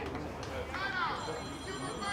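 Players calling out on the pitch in a couple of drawn-out shouts. A faint, steady, high-pitched electronic-sounding tone sets in about a second in.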